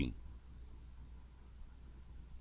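One faint, short click of a computer mouse about a second in, as an annotation is drawn on an on-screen chart, over a low steady hum of room tone.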